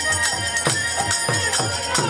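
Devotional kirtan music: khol barrel drums beating a steady rhythm of deep strokes that drop in pitch, about two a second, under a bamboo flute holding a high note, with violin and metallic jingling.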